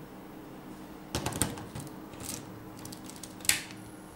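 A lens being fitted and twisted onto a Samsung GX-10's bayonet lens mount: a few small clicks and scrapes about a second in, then one sharp click near the end as the lens latch snaps into place.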